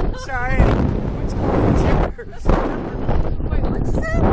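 Heavy wind buffeting the microphone of a ride-mounted camera as the slingshot ride flings riders through the air, with a short wavering scream from a rider near the start.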